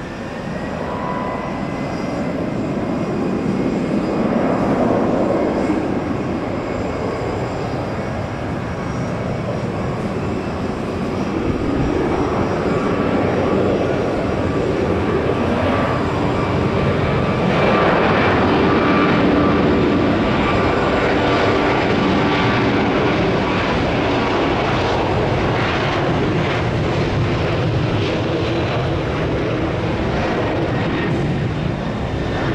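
Jet airliner engines running on the runway: a loud, steady rumbling noise. It swells about four seconds in, eases a little, then builds again to its loudest around eighteen seconds in and stays high.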